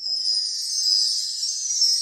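High, bright jingling sound effect that comes in suddenly and holds, marking a quiz slide transition.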